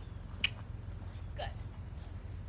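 A single sharp knock about half a second in, over a steady low rumble.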